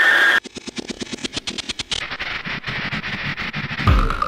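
Indoor skydiving wind tunnel's steady roar with a high whine, which cuts off suddenly about half a second in. A fast, even run of clicks follows, and a music beat comes in at the very end.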